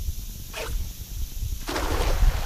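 A 10-foot lead-weighted cast net is thrown: a short rush of noise about half a second in, then the opened net and its lead line slapping down on the water in a spreading splash near the end, the loudest sound. Low wind rumble on the microphone throughout.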